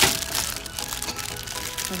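Clear plastic bags of toys crinkling and crackling as they are handled, with a sharp crackle at the start, over quiet background music.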